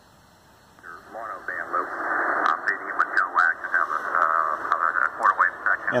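Amateur radio operators' single-sideband voice on the 40-meter band, received in lower sideband on a Tecsun S-8800 portable shortwave receiver and heard from its speaker. The voice comes in about a second in and sounds narrow and thin, with background noise.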